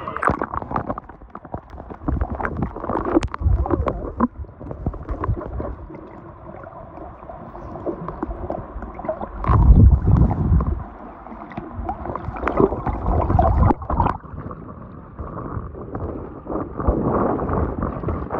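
Seawater sloshing and gurgling around a phone's microphone as it dips in and out of shallow, choppy water, with irregular splashes. About ten seconds in the microphone goes under, and the sound becomes a muffled, deep rumbling, the loudest part.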